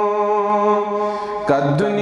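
A man singing a Kashmiri nazm in a chanting style. He holds one long, steady note, then moves on to a new phrase about one and a half seconds in.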